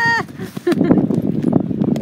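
Players' footfalls and ball touches on artificial turf during a football game, a dense patter of short knocks, with players shouting. A held shout cuts off just after the start.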